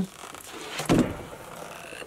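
Handling noise as a painted cardboard shoe buckle is fitted over a leather boot: a soft rustle with a single knock about a second in.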